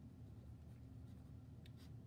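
Faint scratching of a black ink pen drawing lines on paper, over a low steady room hum.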